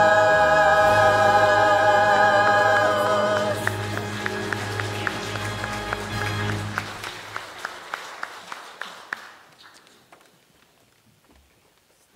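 Church choir with piano accompaniment holding the final chord of a hymn. The singing stops about three seconds in, and the accompaniment goes on with low bass notes and a series of soft, evenly spaced strikes that fade away to near silence by about ten seconds.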